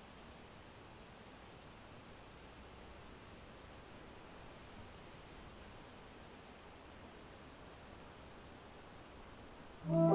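Faint, regular chirping of crickets, about three chirps a second, over a steady low hiss of outdoor evening ambience.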